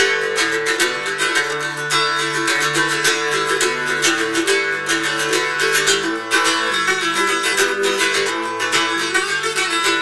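Solo octave mandolin playing an instrumental tune: a quick stream of picked notes over lower strings left ringing.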